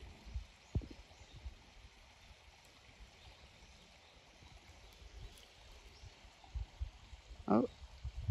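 Faint outdoor background with scattered low bumps and rumbles and a single sharp click a little under a second in; a man's short "Oh" near the end.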